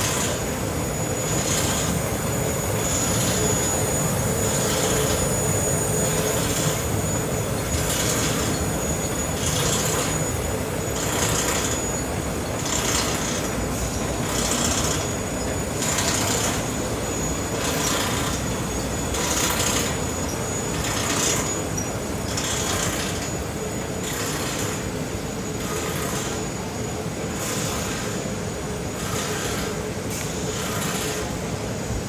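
Hardboard production line machinery running: a steady mechanical hum from the rollers and drives, with a faint high steady whine and a hissing surge that recurs about every one and a half to two seconds.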